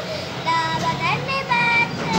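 A young girl singing in a sing-song voice, holding two long steady notes.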